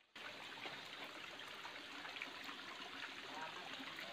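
Shallow stream water trickling steadily over rocks, with small splashes and drips.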